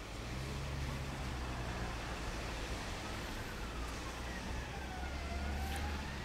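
Street ambience with a steady low rumble of traffic, and a faint emergency-vehicle siren in slow wail mode, falling and then rising in pitch from about three seconds in.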